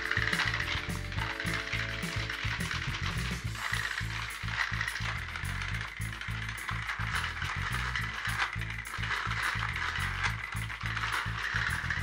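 Background music over the steady buzzing whir of two battery-powered toy train engines' motors. They are pushing head-on against each other and straining without either giving way.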